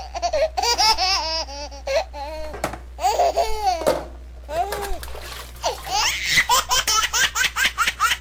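High-pitched laughter in quick repeated bursts, rising and falling in pitch.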